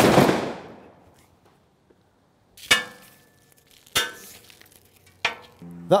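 A 12-gauge over-and-under shotgun firing a single 32 g No. 4 cartridge, a sharp blast that rings away over about a second. Three short sharp metallic clicks follow at intervals of about a second and a half, the first with a brief ringing.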